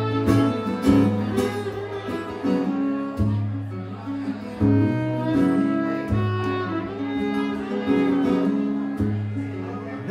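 Fiddle and acoustic guitar playing an instrumental passage of a folk song, the guitar strumming chords while the fiddle bows a melody.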